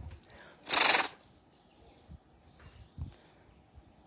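A tiger giving a single short, breathy chuff, a puff of air through the nose, about a second in: the friendly greeting call of a tiger.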